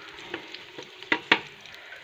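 Hot oil sizzling in a pan of browned onions and garlic while a spatula scrapes and knocks against the pan, with two sharper knocks a little past the middle.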